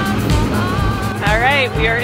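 Background music, with a woman's voice starting to talk over it a little past a second in.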